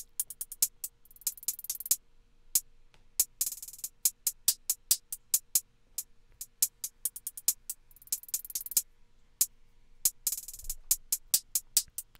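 A programmed trap hi-hat pattern playing on its own, a 'sharp' hi-hat sample from a drum kit: short crisp ticks at uneven spacing, with four fast rolls and changing velocity.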